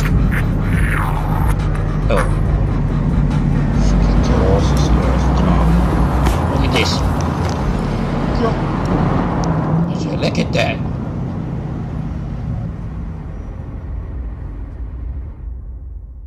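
A car engine running steadily under music, with scattered voices, the whole mix fading out near the end.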